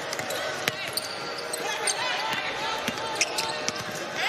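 Basketball bouncing on a hardwood court during live play, with sharp short knocks and faint voices calling out on the court.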